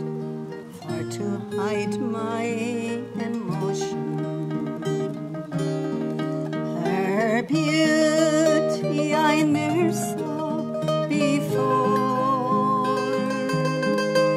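Acoustic guitar strumming chords with a capo, with a mandolin carrying the melody of a traditional Irish ballad in an instrumental passage between verses.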